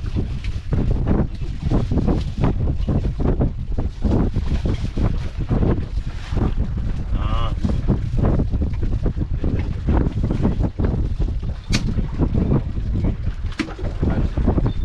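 Strong wind buffeting the microphone on a small fishing boat at sea: a loud, uneven rumble that surges in gusts, with a couple of sharp clicks near the end.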